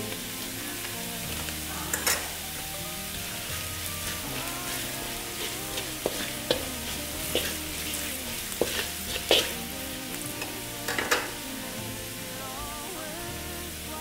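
Minced garlic and shallots sizzling in hot oil in a metal pan as curry powder is stirred in, with a spatula scraping and clicking against the pan a number of times.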